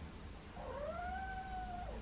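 A young kitten giving one long meow that rises, holds level and falls away at the end, starting about half a second in.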